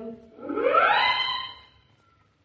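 A musical sound cue on an electronic or organ-like instrument. It plays a single pitch glide that rises, levels off into a held tone, then fades away. It marks the dream window magically vanishing.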